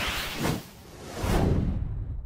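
Whoosh sound effects of an animated logo transition: a swish about half a second in and a louder, longer one near the end, fading out.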